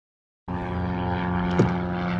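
Silence, then about half a second in a steady engine drone cuts in abruptly and holds, with a short falling tone near the end.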